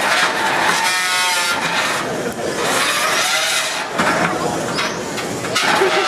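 Combat robot motors in the arena: a steady rasping din, with whines rising in pitch around the middle.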